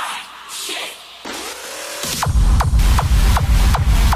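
Hardstyle electronic dance music played by a DJ over loudspeakers: a quieter stretch of sweeping noise effects builds up, then about two seconds in a heavy, fast kick-drum beat drops in loudly.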